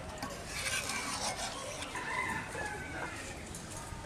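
A rooster crowing, a drawn-out call of about two seconds, over the faint sound of a ladle stirring curry in a metal pan.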